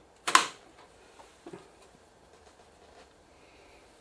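Power-supply circuit board being slid off the metal back panel of an LCD television: one sharp clack about a third of a second in, followed by a couple of faint handling clicks.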